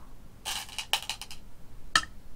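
Go stones clattering together as they are handled, then a single stone clacked down onto the wooden Go board just before the end.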